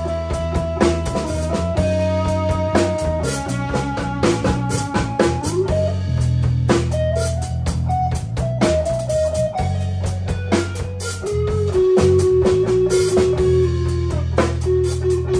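A live instrumental band jam in a slow blues-rock feel. An electric guitar plays a lead of long, sustained notes with slides and bends, over a low bass line and a drum kit. The guitar glides up about halfway through and holds a long note near the end.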